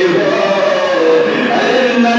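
A man's voice singing devotional Urdu verse in a slow chant through a microphone, with long held notes that glide and fall in pitch.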